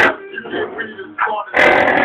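Music with a vocal played loud on a car stereo through a 15-inch subwoofer. About one and a half seconds in, a loud passage overloads the phone's microphone into harsh, crackling distortion.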